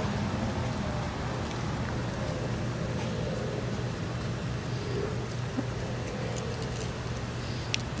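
A steady low motor hum with a faint drone that slowly falls in pitch, and a couple of faint clicks late on.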